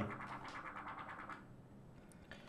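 Faint room noise picked up by a computer microphone in a pause between words, fading away over the first second and a half to near quiet.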